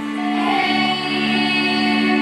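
Children singing a folk song together, accompanied by a small folk string band of fiddles and double bass playing sustained notes.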